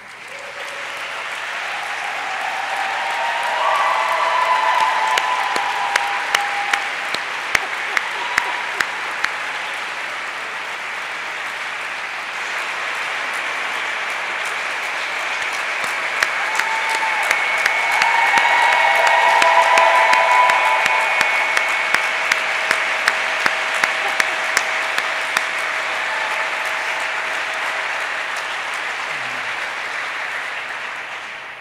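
Audience applauding in a long ovation that builds over the first few seconds and swells again around the middle. Sharp single claps close to the microphone stand out above the crowd, with a few voices mixed in.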